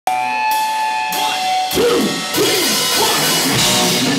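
A live rock band playing: electric guitars, bass and drum kit. Held guitar notes with a couple of sharp cymbal hits open it, then the full band comes in about a second and a half in.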